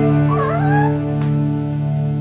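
A Chihuahua puppy gives one short, wavering whine about half a second in, heard over rock music with a held guitar chord.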